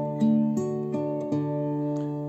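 Classical guitar played fingerstyle: arpeggiated chords, notes plucked one after another and left ringing over each other.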